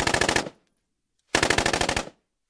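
Two bursts of rapid automatic gunfire about a second apart, each made of quick, evenly spaced shots, with complete silence between them.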